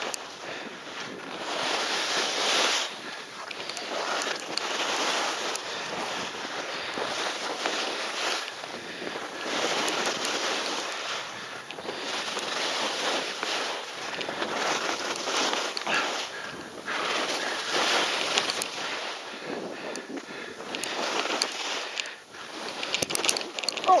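Skis scraping across steep snow in a run of linked turns, each turn a swell of noise every two to three seconds, with wind buffeting the microphone.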